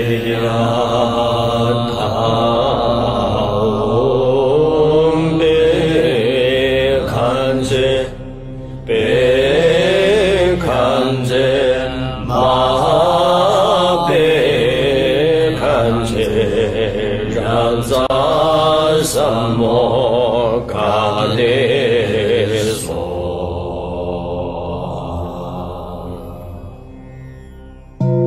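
Theme music of a chanted Buddhist mantra: a voice sings long, wavering phrases over a steady drone. The singing stops about five seconds before the end, and the music then fades down.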